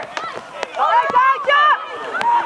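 Several high voices shouting and calling out over one another during a football match, with a few sharp knocks in between.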